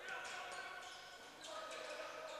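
Basketball being dribbled on a hardwood court, several faint bounces.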